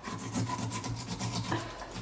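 Flexible filleting knife slicing through the skin and flesh along the backbone of a sea bass, a quick run of short rasping strokes.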